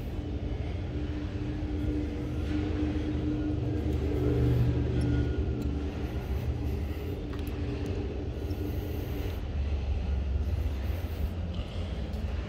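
A low, steady motor rumble with a hum that swells to its loudest about four seconds in and fades out by about nine seconds.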